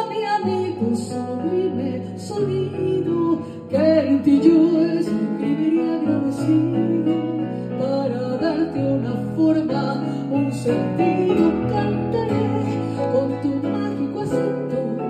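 A pasillo played live: a woman singing into a microphone, accompanied by piano played on a digital keyboard and acoustic guitar.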